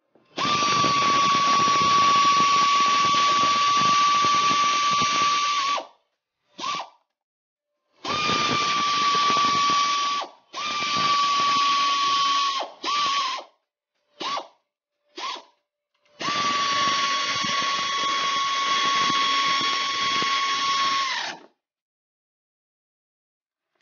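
Power ratchet spinning a socket on an extension to run a bolt on the engine bracket. It goes in runs of two to five seconds, with a few short blips between, each run a steady whine that sags a little as it stops.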